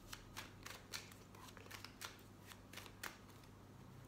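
A tarot deck being shuffled by hand: faint, irregular flicks and slaps of cards, a few a second.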